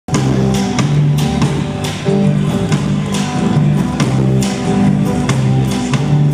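Live band playing an instrumental passage on electric guitar, electric bass and drum kit: a low figure repeating about every two seconds under steady drum and cymbal hits.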